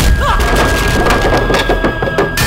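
Film fight sound effects: a rapid run of sharp cracking, splintering impacts as punches land.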